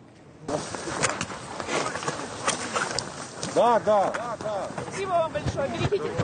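People scrambling on foot after nearby artillery hits: hurried, irregular footfalls and knocks of gear, with a few short shouted calls in between.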